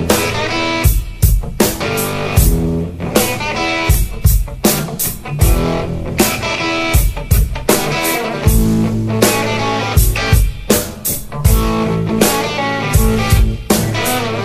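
Background rock music led by electric guitar over a drum kit, with drum hits at a steady beat.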